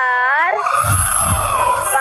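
Panicked people screaming, with high wailing cries that fall and rise in pitch at the start and again at the end, over low rumbling pulses.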